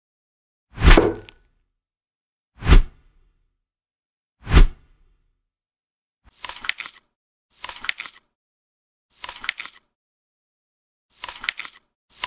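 Three separate plop sound effects, deep and loud, about two seconds apart, then from about six seconds in, four short crackly bursts of rapid clicks like crunching bites, each about half a second long and roughly one and a half seconds apart, with dead silence in between.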